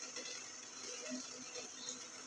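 Quiet room tone with a faint, steady low hum and a few soft, indistinct small noises.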